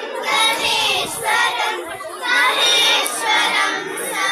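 A group of children singing a Ganesha stotram (a devotional hymn) together in unison, in sustained sung phrases with brief breaks between them.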